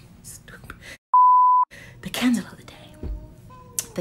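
A single steady high-pitched censor bleep about half a second long, with the audio cut to dead silence just before and after it. Faint breathy voice sounds come before and after.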